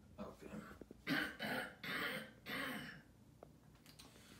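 A man coughing and clearing his throat: four rough bursts in quick succession starting about a second in, then quiet room tone.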